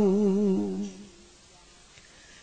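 A chanting voice holds the drawn-out last note of a Vietnamese verse line, wavering in pitch, and fades out about a second in; the rest is quiet.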